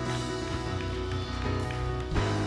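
Live church worship music from a band and choir, slow, with steady held chords.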